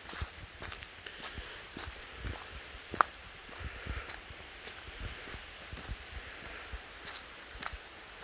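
Footsteps walking over mossy forest ground, soft thumps about two a second, with one sharp click about three seconds in that stands out as the loudest sound.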